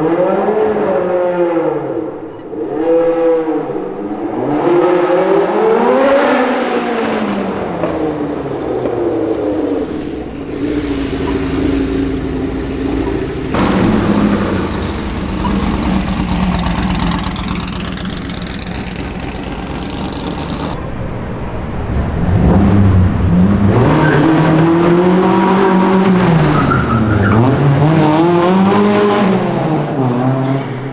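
Vintage open-wheel race car engine revving hard, its pitch sweeping up and down again and again with a steadier-running stretch in the middle. The sound changes abruptly a few times, as if several runs are joined together.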